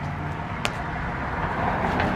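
Low, steady outdoor rumbling noise that grows slightly louder, with a single sharp click about two-thirds of a second in.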